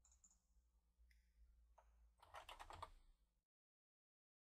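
Faint computer keyboard typing: a few scattered keystrokes, then a quick run of keys about two seconds in, as a word is typed.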